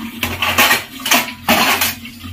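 Washed metal pots and dishes clattering against each other as they are set into a plastic dish rack, in three bursts of clatter.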